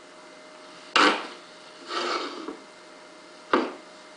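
Heavy plaster ocarina mould blocks knocked down on the workbench: a sharp knock about a second in, a short scrape as a block slides, then a second knock near the end.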